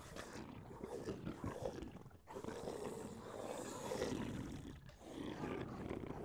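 A low, rasping, growl-like sound that runs in long swells, breaking off briefly about two seconds in and again near five seconds.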